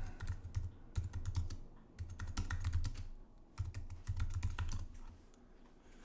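Typing on a computer keyboard: quick clusters of key clicks as a terminal command is entered, stopping about four and a half seconds in.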